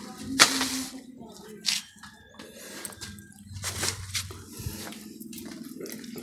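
Quiet handling noises as thin wire ends are twisted together by hand: a few short rustling scrapes, one about half a second in and others near two and four seconds.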